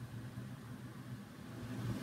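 Quiet room tone: a low, steady hum with a faint hiss underneath.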